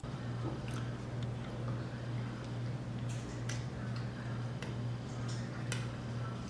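A man biting into and chewing a burger, with scattered soft clicks of chewing and mouth sounds over a steady low hum.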